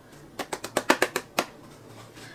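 A small white cardboard box being handled, giving a quick run of about eight sharp clicks and taps over about a second.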